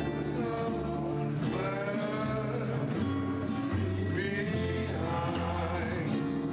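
A small Hawaiian string band playing and singing: ukuleles and upright bass under voices holding long notes, with the bass stepping between low notes every second or so.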